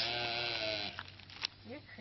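A goat bleating: one long, wavering bleat that fades out about a second in, followed by a couple of faint clicks.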